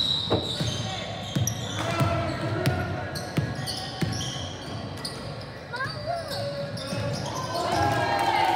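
A basketball being dribbled on a hardwood gym floor, a bounce about every two-thirds of a second, with sneakers squeaking and players' voices echoing in the gym.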